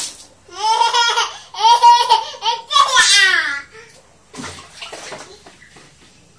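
Water splashing out of a plastic scoop onto a tiled floor at the start, then a toddler's loud, high-pitched squealing babble for about three seconds, with more water splashing near the end.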